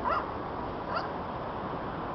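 A dog whimpering: two short, rising yips about a second apart.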